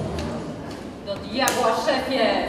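The end of a song fades away, and about a second in a voice begins speaking, with a single sharp click in the middle of it.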